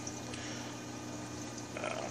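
Steady hiss of moving water with a low, even hum, typical of an aquarium filter or pump running.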